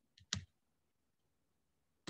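Clicks at a computer: a faint click followed at once by a louder one about a third of a second in, against near silence.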